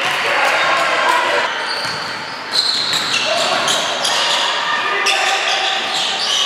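Basketball game sound in an echoing gym: a ball bouncing on the hardwood floor, sneakers squeaking in short high chirps throughout, and players' indistinct shouts.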